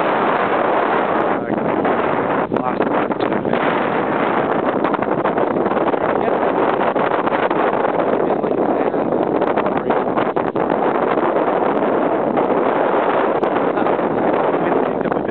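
Wind buffeting the microphone: a loud, steady rushing, with a few brief knocks in the first few seconds.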